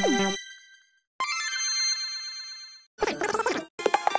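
Short logo jingles sped up fourfold, cut one after another with brief silent gaps: a jingle ends about half a second in, then a quick run of high chiming notes, then a denser burst of another jingle starts near the end.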